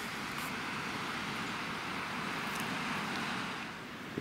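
Steady, even hiss of sea surf washing on the shore, easing slightly near the end.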